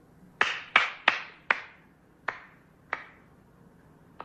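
A series of six sharp knocks, each ringing out briefly: four in quick succession, then two more spaced further apart.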